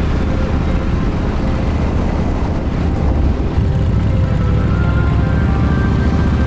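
V-twin cruiser motorcycle running under way at road speed, a dense low engine note mixed with heavy wind noise on the camera microphone.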